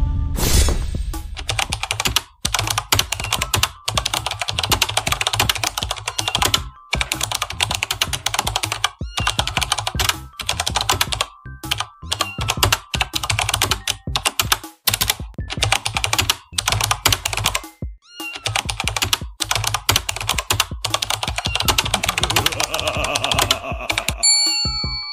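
Fast computer-keyboard typing sound effect, in runs of rapid clicks broken by short pauses every few seconds, over background music.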